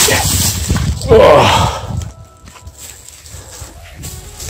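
Gloved hand scraping and brushing soil and dry leaves off a large buried enamelled metal dish, rustling and scraping for about two seconds, then much quieter.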